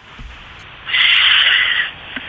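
A breathy hiss lasting about a second, heard over a telephone line.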